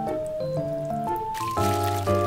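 Playful background music: a bright melody of short notes that steps upward over a steady bass, swelling into a fuller, louder passage with a hissing top near the end.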